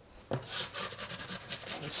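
A short click, then a wooden board with the loaf rasping and scraping as it is pushed across the oven's deck to load the bread.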